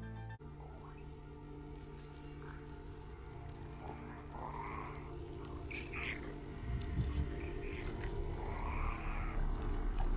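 TV episode soundtrack: a low, steady synth music drone, with a small creature's chirping squeals gliding over it a few times, growing louder toward the end.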